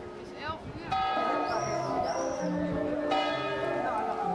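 Tower clock bell striking the hour: a strike about a second in and another about two seconds later, each ringing on. Music with a melody comes in under it.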